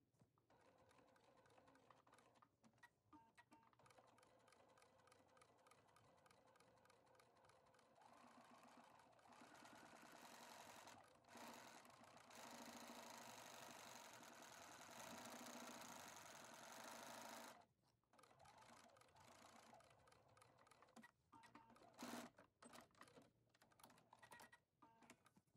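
Bernina B570 sewing machine stitching, faint: a rapid, even run of needle strokes that grows louder partway through and stops suddenly about three-quarters of the way in, followed by a few scattered clicks.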